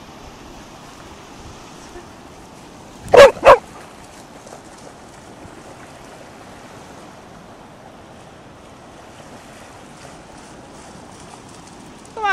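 A Cardigan Welsh Corgi barks twice in quick succession about three seconds in, over a steady hiss of surf.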